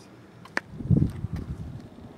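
Wind gusting across the camera microphone, a short uneven low rumble about a second in, preceded by a click from handling the camera.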